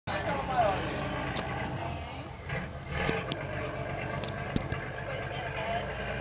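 Steady low drone of a passenger boat's engine running, with people talking in the background and a few short sharp clicks and knocks.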